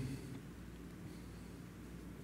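A pause with only faint room tone: a quiet, steady low hum and no distinct sound event.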